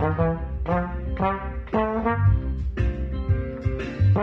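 Slide trombone playing a shuffle tune in a run of short, separate notes, about two a second, each starting with a bright attack.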